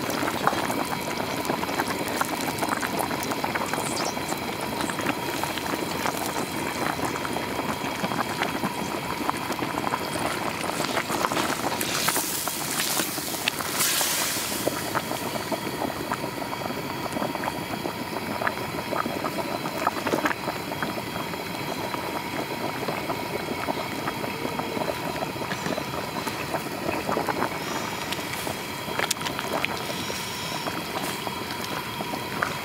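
Spicy fish soup boiling in a large steel wok, a steady crackle of bursting bubbles. About halfway through comes a louder rush lasting a couple of seconds.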